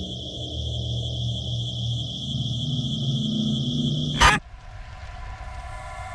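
Horror-film sound design: a steady high ringing tone over a low rumbling drone that grows louder, cut off by a sudden loud hit a little over four seconds in. A quieter bed of held musical tones follows and begins to swell.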